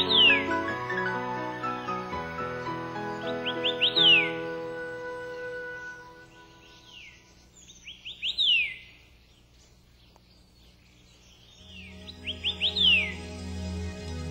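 A bird calls four times at roughly four-second intervals. Each call is a few quick short notes followed by a longer whistle that falls in pitch. Soft sustained background music runs under it, fades away in the middle and comes back near the end.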